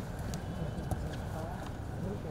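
Background chatter of children and onlookers during a kick-about on grass, with a few short knocks from feet and the football.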